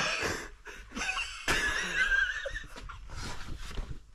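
A person's wordless vocal sounds: breathy, wheezy noises, then a high, wavering whine for about a second, starting a second and a half in.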